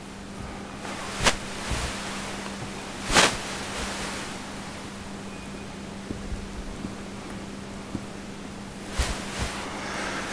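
Dry-erase marker drawing lines on a whiteboard, heard as a few short strokes over steady wind-like hiss on the microphone.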